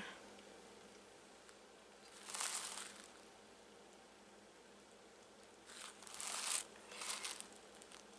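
Soft rustling and sliding on cloth as a glass bottle is turned on a cloth-covered table and hands brush the cloth, in three short bursts about two, six and seven seconds in, faint between them.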